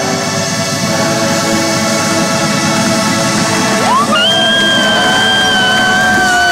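Drum and bugle corps brass and drums playing a sustained chord. About four seconds in the horns slide upward into a louder held high chord, the final climax of the show.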